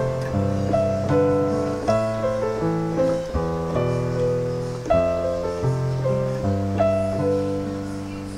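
Piano playing a slow arpeggiated chord progression, each chord's notes struck one after another over a held bass note, with a new chord about every second and a half. The chords are the la–mi–do, mi–ti–so, fa–la–do and so–re–ti triads (A minor, E minor, F and G in the key of C).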